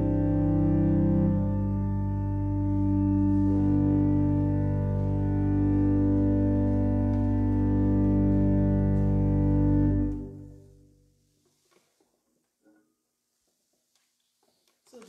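Pipe organ holding sustained chords over a deep pedal bass, moving to new chords a couple of times. About ten seconds in the final chord is released and the sound dies away in the room's reverberation.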